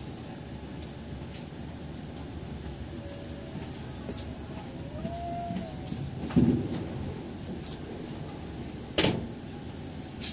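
Inside a passenger train carriage as it pulls slowly out of a station: a steady low rumble, a faint brief squeal about five seconds in, and two loud knocks about six and a half and nine seconds in.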